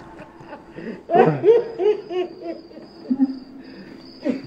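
A person's voice in a quick run of short hooting syllables, falling in pitch, about a second in, over a steady high chirring of crickets.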